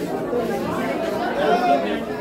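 Chatter of many boys' voices talking over one another, with no single voice standing out.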